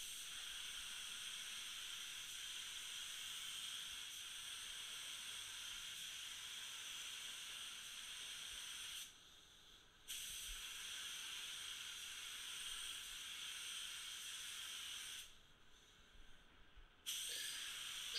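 Gravity-feed paint spray gun hissing as it sprays basecoat in long steady passes. It cuts off abruptly about nine seconds in and again about fifteen seconds in as the trigger is released, with a short burst near the end.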